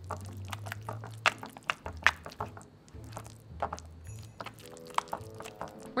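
A black spoon scooping and stirring soft pumpkin filling and goat cheese in a glass bowl, with irregular clicks and taps of the spoon against the glass.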